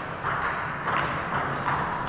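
Celluloid-type table tennis balls clicking: a few scattered, irregular ticks of ball on table and bat, with the steady hum of a sports hall.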